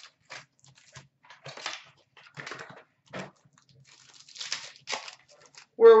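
A trading card box and pack wrapper being torn open by hand: a run of short tearing and crinkling sounds, one after another. The voice comes back just before the end.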